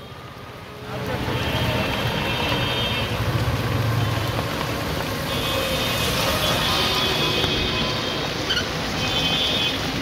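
Rain and wet-road traffic heard from a moving electric three-wheeler rickshaw: a steady, dense hiss of rain and tyres on the flooded street that swells up about a second in, with long high tones sounding three times over it.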